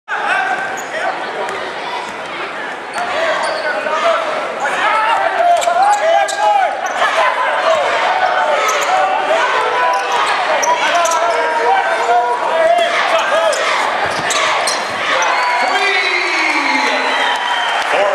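Basketball game play: a ball being dribbled on a hardwood court, sharp bounces scattered throughout, with players' and spectators' voices over it.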